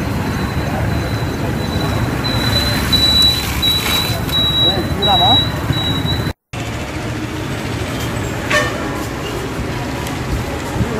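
Street noise of traffic and people's voices. A thin, high, steady tone sounds through the middle, and the sound cuts out briefly at about six seconds.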